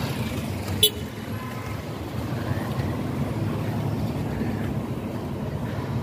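Steady rumble of city street traffic, with a short sharp click about a second in.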